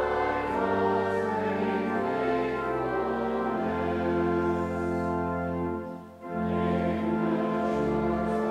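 A congregation singing a hymn in long held notes over a steady low instrumental accompaniment, with a brief break about six seconds in.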